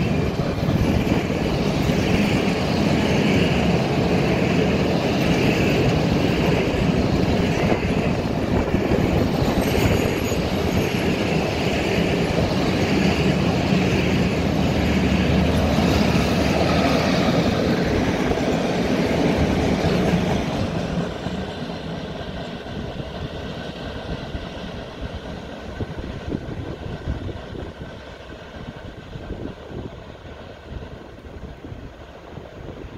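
A freight train of telescopic-hood wagons behind an ET22 electric locomotive rolls past at close range in a loud, steady rumble of wheels on rail. About two-thirds of the way through it falls away sharply and fades as the train moves off.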